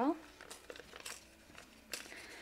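Faint paper crinkling and small rustles as a paper sticker is handled and peeled from its backing sheet, with a sharper little tick near the end.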